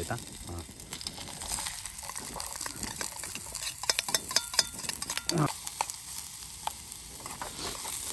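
Diced onions sizzling in a hot steel pot on a portable gas-canister camping stove, with a steel spoon stirring and clicking against the pot.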